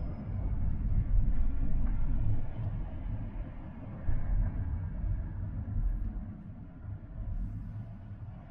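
Low rumble of a car's road and engine noise heard inside the cabin while driving, dropping lower in the second half.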